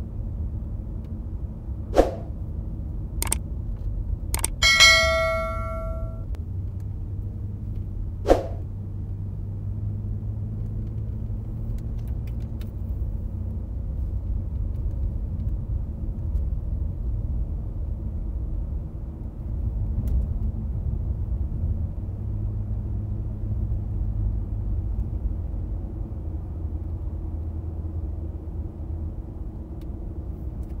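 Car driving, heard from inside the cabin: a steady low rumble of road and engine noise. A few sharp knocks sound in the first eight seconds, and a ringing metallic ding about five seconds in is the loudest sound.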